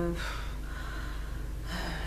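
A woman's drawn-out hesitation "euh" ends, followed by a soft audible breath in. Her speech starts again near the end.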